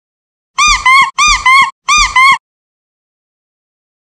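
Squeaky dog toy squeaked loudly three times in quick succession, each squeeze giving a double squeak that rises and falls in pitch.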